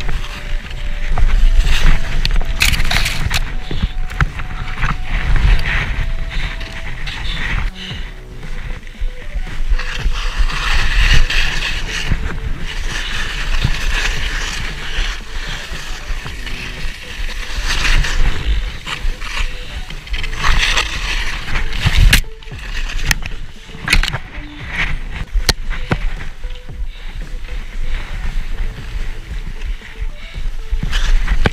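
Skis swishing through deep powder snow: a loud, uneven rush that swells and drops with each turn, with sharp crunching spikes.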